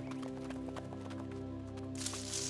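Trotting hoofbeats as a cartoon sound effect: a quick, even clip-clop over steady background music.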